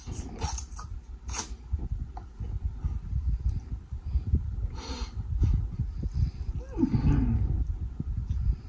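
Close-miked eating of saucy spicy noodles: wet chewing and mouth sounds, with a few short sharp slurps. About seven seconds in there is a brief hum that falls in pitch.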